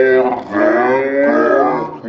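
A young man's voice making drawn-out, wordless noises close to the microphone: a short one, then one held for over a second with its pitch wavering.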